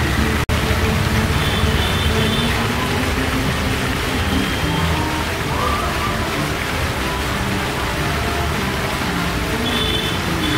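Music playing under a steady, dense hiss-like noise, with a brief dropout about half a second in.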